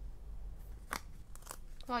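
Stickers and paper being handled on a desk with metal tweezers: one sharp click about a second in, then a few lighter ticks.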